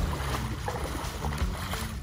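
Wind buffeting the microphone over water splashing around a person's feet as they wade through shallow lake water.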